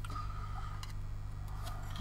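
A few faint clicks of plastic model-kit sprues being handled, over a steady low hum.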